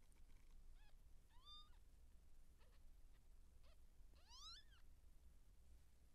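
Faint cat mewing: a few short, quiet mews and two clearer rising mews, the louder one about four seconds in.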